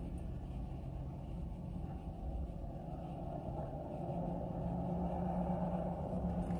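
Steady low vehicle rumble heard from inside a car's cabin, growing slightly fuller toward the end.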